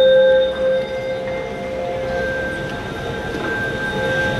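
Live orchestral music in a large arena: long held notes at several pitches, sustained and overlapping, loudest at the start.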